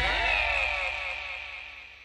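The last chord of a Bengali film song dying away, its notes sliding down in pitch as it fades out.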